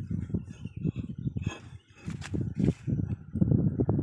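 Close handling noise of a steel dodos blade gripped and turned in the hand near the microphone: a dense run of irregular low knocks and rubbing, with a few brief scrapes in the middle.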